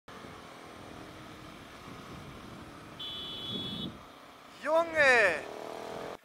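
Faint motorcycle riding noise, then a brief steady high electronic tone about three seconds in. Near the end comes a loud voice exclamation that rises and falls in pitch.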